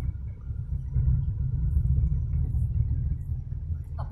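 Low, uneven rumble of a moving car heard from inside the cabin, growing louder about a second in.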